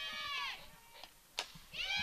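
A high, drawn-out shout from a voice at the field, its pitch rising and then falling, dies away about half a second in. After a near-silent gap comes a single sharp crack, a little under a second and a half in: the bat hitting the softball.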